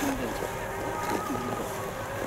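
Faint distant voices over a steady outdoor background hiss, with a faint steady hum underneath.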